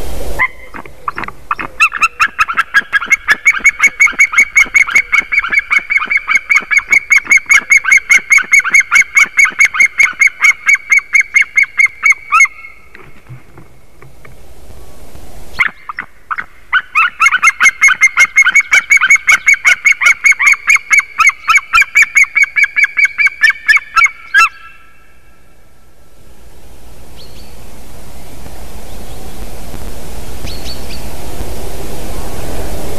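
A pair of white-tailed eagles calling together in two long bouts of rapid, repeated yelping calls, about four a second. The first bout lasts about twelve seconds; the second starts after a few seconds' pause and lasts about eight.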